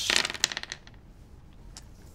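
A handful of dice tumbling onto a tabletop, a quick clatter of clicks for about half a second that dies away, followed by a couple of faint ticks.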